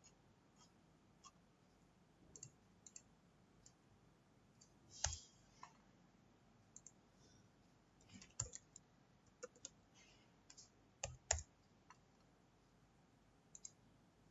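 Scattered clicks from a computer mouse and keyboard keys over near-silent room tone. The sharpest come about five seconds in and in a cluster from about eight to eleven seconds in.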